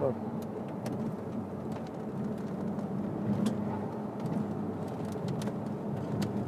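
Saab 9-3 2.0 turbo four-cylinder engine pulling under load through a bend, heard from inside the cabin with tyre and road noise: a steady drone.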